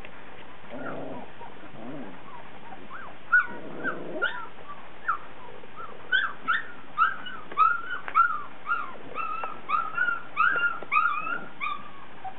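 Young puppies whimpering: short, high whines that rise and fall. They start sparsely about three seconds in and come about two a second through the second half.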